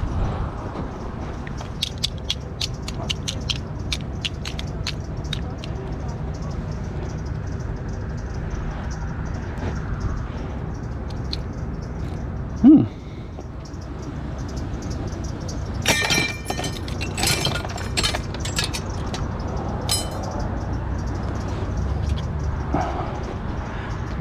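Small steel chain and metal scrap parts clinking and rattling as they are handled, in clusters of sharp clicks early on and again in the second half, over a steady low background rumble. About halfway through comes one short squeal, the loudest sound.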